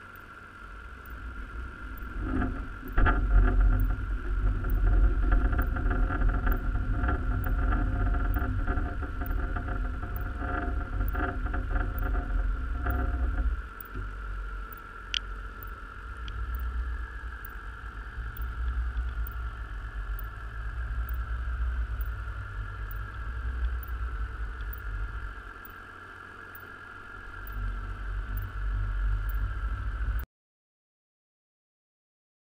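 Underwater recording at a creel on the seabed: a loud, uneven low rumble with a steady high whine above it, and a run of knocks and rattles from about two seconds in that stops abruptly about halfway, typical of creel gear and a fishing boat heard through the water.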